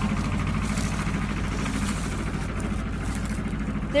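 A steady low motor-like hum, with corn leaves rustling against the phone as it pushes through the stalks.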